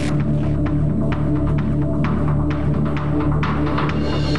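Tense documentary underscore: a low, throbbing drone with sharp ticks about twice a second.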